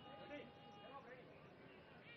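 Near silence, with faint distant voices and a few faint steady tones.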